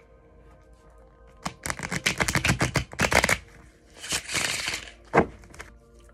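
A tarot deck being shuffled by hand: rapid card flicking for about two seconds, then a brief sliding rustle and a single sharp tap of the deck, over faint background music.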